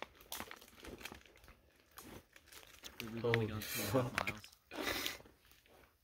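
Faint crinkling and rustling, a run of small clicks, for about three seconds, then a few spoken words and a short rush of noise near the end.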